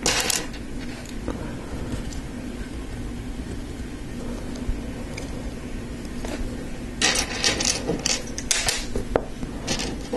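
Small plastic LEGO pieces clicking and clattering as they are handled and pressed together, one click just after the start and a quick run of sharp clicks and rattles over the last three seconds.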